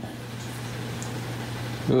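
Steady low hum with an even hiss of bubbling, aerated water from running aquarium equipment.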